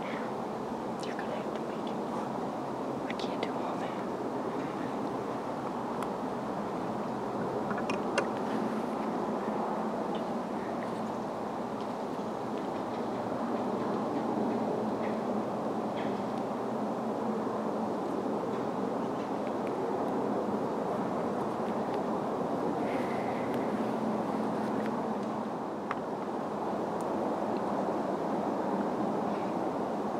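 Steady hiss of woodland background noise, with a few faint short clicks and rustles scattered through it.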